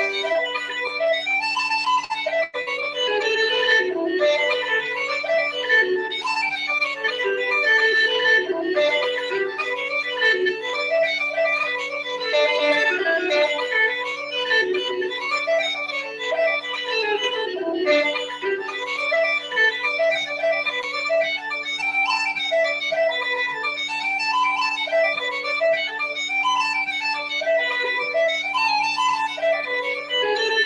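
Uilleann pipes playing a traditional Irish reel: a quick chanter melody over the steady hum of the drones.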